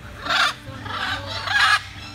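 A macaw squawking twice: two loud calls, the first about a quarter second in and the second about a second and a half in.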